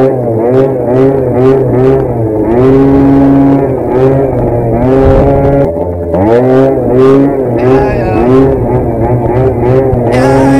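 Genuine Roughhouse 50 scooter's small two-stroke engine, the throttle worked in quick pulses so the engine note rises and falls about twice a second. Twice, near the start and about six seconds in, it revs up from low.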